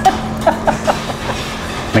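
Butter and olive oil sizzling steadily in a stainless steel skillet over a low steady hum, with a few short light clicks of metal tongs in the pan about half a second to a second in.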